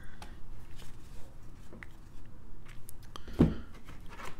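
Trading cards being handled on a tabletop: light scattered clicks and taps of cards and a plastic toploader being set down and picked up, with a soft thump about three and a half seconds in.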